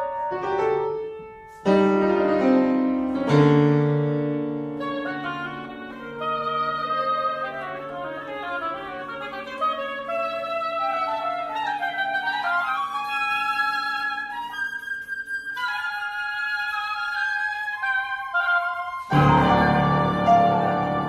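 Contemporary chamber quartet of flute, oboe, electric guitar and piano playing: two loud piano chords in the first few seconds, then long held low notes under winding woodwind lines, and a loud full chord near the end.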